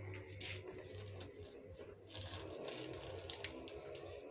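Faint rustling and scraping of a plastic planting bag filled with soil as it is picked up and handled, over a low steady hum.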